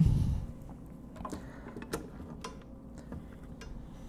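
A clamp's screw being hand-tightened onto a glued guitar neck joint: a few faint, scattered clicks and small creaks of the screw and pads as it is turned.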